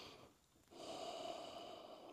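A person's long, soft breath drawn audibly through the nose during a yoga stretch, starting a little before halfway and lasting about a second and a half.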